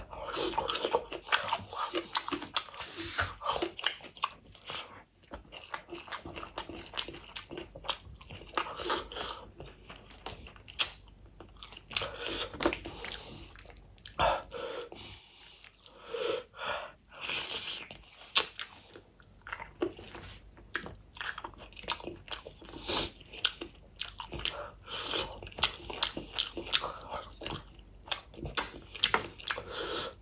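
Close-miked eating sounds from a person chewing rice and fish curry: wet chewing and lip smacks with crunchy bites throughout, many short irregular clicks.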